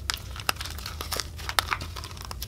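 Slime being squeezed and pulled out of a plastic tub by hand, giving a string of sharp, irregular crackling pops; the loudest come about half a second and a second and a half in.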